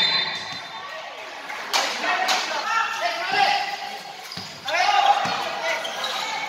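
A basketball bouncing on the court during live play, a few separate knocks, with voices calling out from around the gym.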